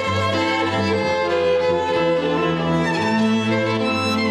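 A string quartet plays a smooth passage of long bowed notes that change about once a second. The violins carry the upper line and the cello holds the low notes beneath.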